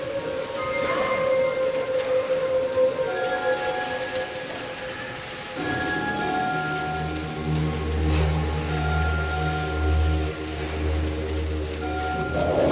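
School concert band playing a slow passage of sustained notes, soft at first; about halfway through, low notes come in underneath and the sound builds and grows fuller.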